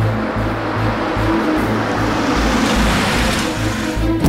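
Dramatic background score with a steady low pulsing beat, under a rushing noise swell that builds over about three seconds and cuts off suddenly near the end.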